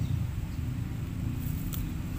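Low, steady outdoor rumble, with a few faint clicks about one and a half seconds in.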